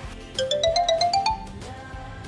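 A quick rising run of about eight bright, chime-like notes, an edited-in sound effect over soft background music.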